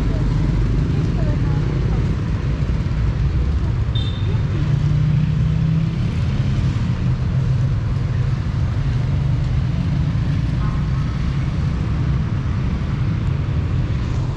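Steady low rumble of city street traffic, with a short high tone about four seconds in.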